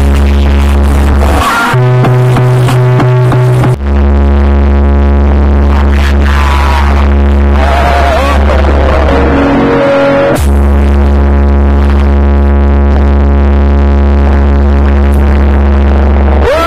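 Music played very loud through a trailer wall of 36 Triton AK 6.0 15-inch subwoofers, dominated by long held deep bass notes. The deepest bass cuts out briefly about ten seconds in.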